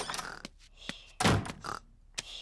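Cartoon front-door sound effects: a click as the door opens, then a single heavier thud as it shuts about a second and a quarter in.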